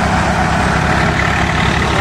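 Eicher 333 tractor's diesel engine running steadily under load, driving a threshing machine. The engine note and the thresher's running noise blend into one continuous, even mechanical din.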